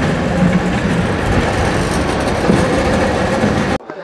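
Automated warehouse conveyor system running: a loud, dense, steady mechanical rattle and hum that cuts off suddenly near the end.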